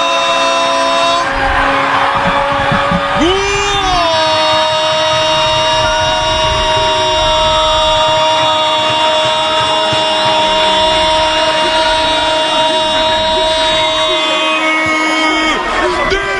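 A football commentator's long drawn-out goal cry, one high held note lasting well over ten seconds, breaking and shifting pitch twice in the first few seconds before settling into a steady hold. It marks a goal just scored, putting the home side 3-0 up.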